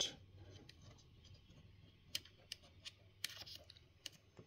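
Faint handling noise at a laptop: a few short, sharp clicks, mostly in the second half, as a USB cable is unplugged and the laptop is handled.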